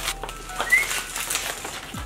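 Rustling and crinkling of large vinyl stencil sheets on their backing paper being handled, with one short rising chirp-like squeak about three-quarters of a second in.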